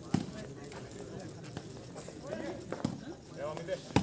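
A volleyball being struck by hand during a rally: a handful of sharp slaps, spaced about a second apart, with the loudest near the end. Background crowd chatter runs underneath.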